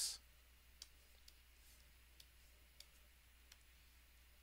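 Near silence with a low steady hum and about five faint, sharp clicks spread irregularly, typical of a computer pointing device being clicked while working a whiteboard program.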